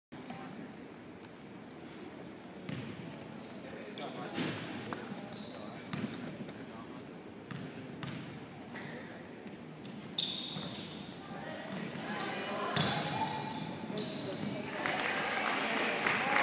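Basketball bouncing on a hardwood gym floor, sharp knocks a second or two apart, with short high squeaks and background voices echoing in a large gym. The din grows louder in the last few seconds as the players run.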